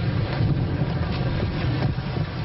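Steady low rumble of outdoor background noise, with a few faint knocks.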